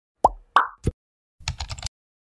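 Animated-intro sound effects: three quick cartoon pops in the first second, each dropping in pitch, then about half a second of rapid keyboard-typing clicks as text is typed into a search bar.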